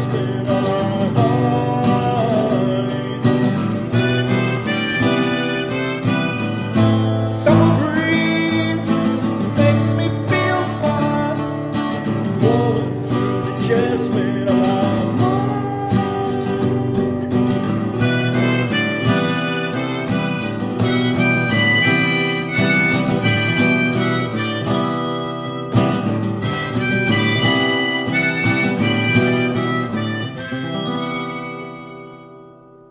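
Harmonica playing a melody over guitar accompaniment.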